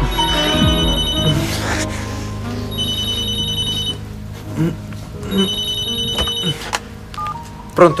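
Cordless telephone ringing three times, each ring about a second long and about two and a half seconds apart, over soft background music.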